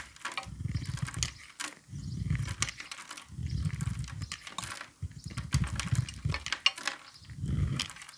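A small blade carving shavings off a bar of soap in about five repeated strokes, each a low scraping rub with crisp crackling as the slivers break away.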